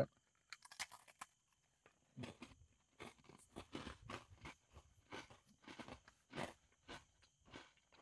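Faint, irregular crunching and chewing as people bite into and eat Oreo sandwich cookies with a popping-candy filling, a couple of crunches a second.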